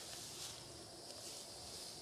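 Faint outdoor background: a steady high-pitched hiss with no distinct events.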